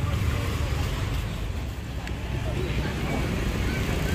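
Steady low rumble of vehicle and street noise, with no sharp events.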